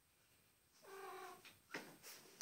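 A domestic cat meows once, a short, fairly level call about a second in, followed by a brief high chirp.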